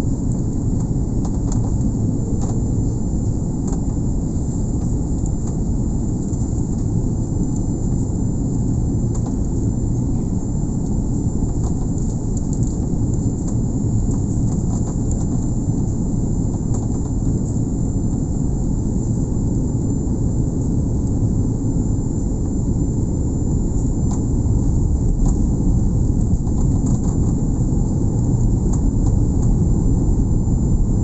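Steady low rumble of an airliner's engines and rushing airflow heard inside the cabin during descent, with a thin steady high-pitched whine over it. It grows slightly louder in the last few seconds.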